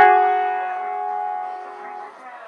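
Upright piano: several keys struck together at once right at the start, the notes left to ring on and die away slowly.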